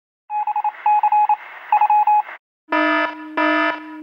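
Electronic beeping and alarm sounds: three quick bursts of rapid high beeps, then after a short gap a harsh buzzing alarm that pulses on and off about one and a half times a second.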